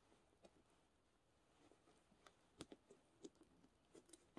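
Near silence, broken by a few faint small clicks from the metal Talon zipper of an M-51 field jacket as its slider and pin are fitted together at the hem, mostly in the second half.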